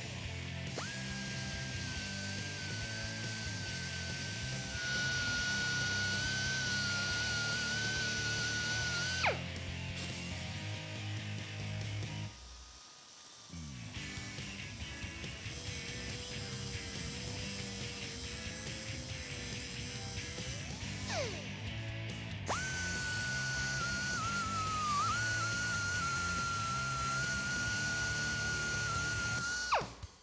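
Small hand-held cutoff wheel whining at high speed as it cuts the ends off steel strut-mount studs. The whine winds down with a falling pitch about nine seconds in, runs at a lower pitch through the middle, speeds back up about twenty seconds in and winds down at the end. Background music plays under it.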